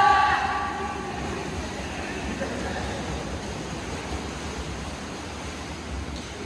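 Freestyle swimmers splashing down an indoor pool, a steady wash of water noise in a reverberant hall that slowly fades as they reach the wall. Shouted cheering at the start dies away within the first second.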